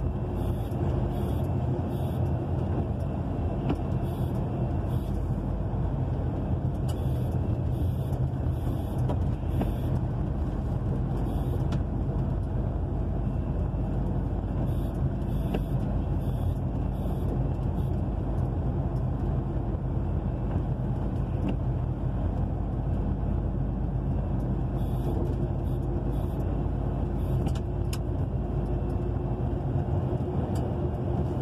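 Heavy truck cruising steadily on the highway, heard from inside the cab: an even engine hum under road and tyre noise on wet asphalt.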